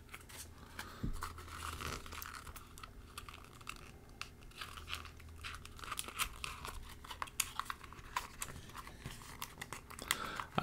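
Hands handling and working small parts of a cardboard pop-up diorama kit: faint, irregular rustles, crinkles and small clicks.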